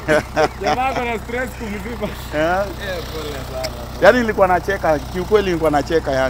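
People talking and laughing, over a steady low hum.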